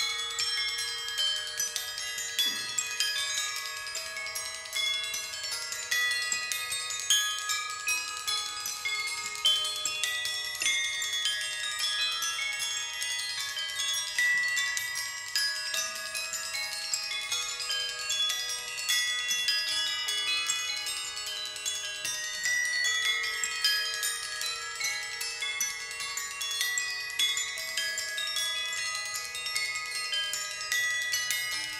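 A percussion quartet playing glockenspiels and other small metal percussion with mallets: dense, rapid runs of bright ringing notes that overlap in a continuous shimmer, the players running scales up and down their instruments.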